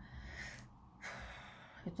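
Faint breathing of a woman pausing between sentences: a short breath, a brief gap, then a longer breath just before she speaks again.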